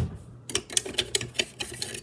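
A low thump, then a quick, irregular run of light clicks and clatters: kitchen knives and utensils rattled about in a drawer while searching for a knife.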